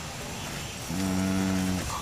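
A man's voice holding one flat, drawn-out hum, "mmm", for about a second, starting about a second in.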